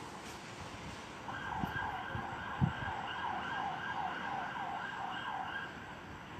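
Emergency vehicle siren in a fast yelp, its pitch sweeping up and down about two to three times a second. It starts a little over a second in and stops shortly before the end, with a few short low thumps beneath it.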